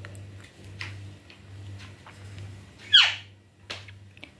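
Alexandrine parakeet giving one short, loud squawk that falls sharply in pitch about three seconds in, with faint scattered clicks around it.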